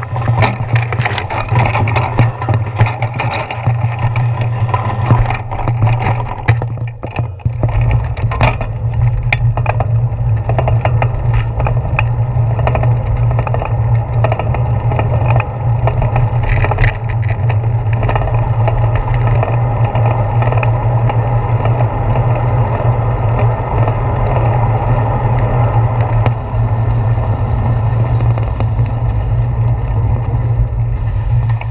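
Bicycle riding, heard through a handlebar-mounted camera: for the first seven seconds or so, on a rough dirt trail, frequent clicks and knocks as the bike jolts over the ground. After that comes a steady low rumble as the bike rolls on pavement.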